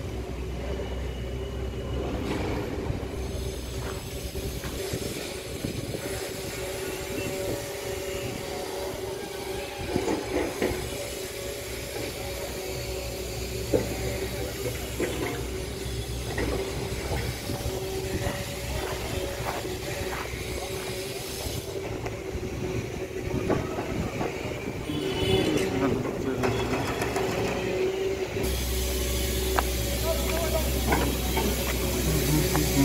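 Hydraulic excavator working on a building demolition: a steady engine drone with a whine, broken by scattered knocks and crunches of concrete being broken.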